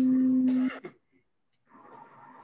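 A loud, steady, low hum-like tone held on one pitch, cutting off abruptly under a second in, followed by a moment of silence.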